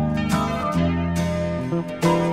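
Instrumental intro of an Italian pop song, with strummed guitar chords over a steady bass line and no singing yet.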